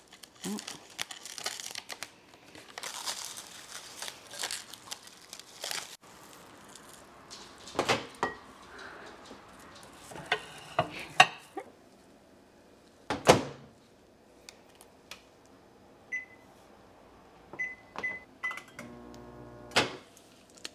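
Plastic wrap crinkling as it is pulled over a glass dish, then several knocks as the dish is set in a microwave oven and the door is shut. Four keypad beeps follow, the last three in quick succession, and the microwave starts to hum near the end.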